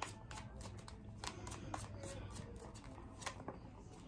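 A deck of round oracle cards being shuffled by hand: many soft, irregular clicks and flicks of card against card.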